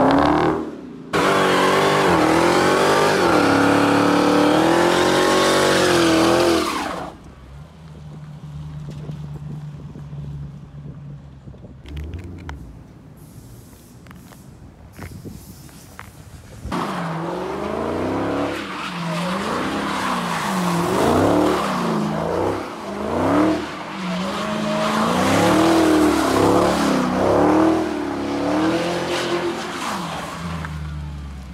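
Dodge Challenger SRT Hellcat's supercharged V8 revving hard while the rear tires spin and squeal in a burnout and donuts, the squeal wavering up and down in pitch. About seven seconds in, it drops to a quieter, steady low engine note for roughly ten seconds, then the revving and tire squeal start again.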